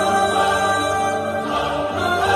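Intro vocal music: several voices singing together in long, slowly moving notes, with no drums or other percussion.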